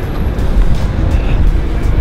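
City street traffic noise with a steady low rumble, under background music.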